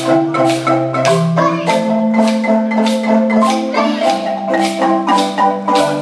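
Marimba ensemble, several wooden-bar marimbas with tube resonators, playing a steady rhythmic piece: a melody of struck notes, about two to three strokes a second, over long-held low bass notes.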